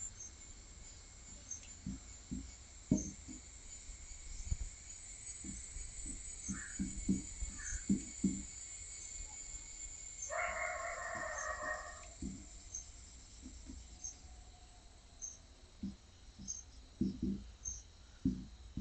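Marker-on-whiteboard drawing: scattered short knocks and taps as the pen strikes and drags across the board, with insects chirping steadily in the background. A held call of just under two seconds sounds a little past the middle.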